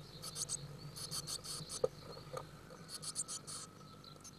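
Blue tit chicks in a nest box giving thin, high-pitched chirping calls in three quick bursts of rapid notes, with a light knock about two seconds in.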